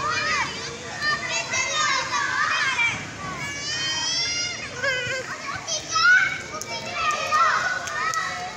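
Children shouting and calling out at play: high-pitched voices rising and falling in pitch, one call after another, with no clear words.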